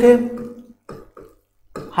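A man's voice holding out a final syllable for about half a second and fading, then a few faint short sounds and a brief pause before his speech starts again near the end.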